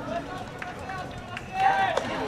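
Voices carrying across a baseball ground. Near the end one voice rises into a loud, drawn-out call.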